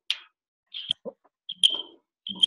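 Video-call audio breaking up: short scraps of sound and brief high chirps separated by dead silences, the way a gated, dropping connection sounds.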